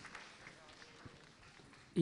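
Quiet hall ambience with low background noise and a soft knock about a second in.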